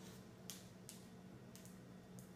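Near silence with a few faint, short clicks over a low room hum as the lid is worked off a pint ice cream carton.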